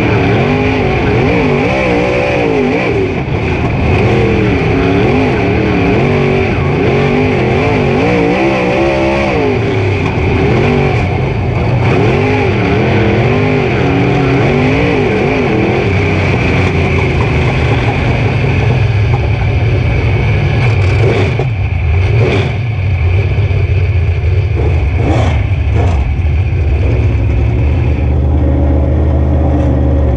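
Super Late Model dirt race car's V8 engine heard from inside the car, its pitch rising and falling again and again for the first half, then running at a steadier, lower pitch. A few sharp knocks come through about two-thirds of the way in.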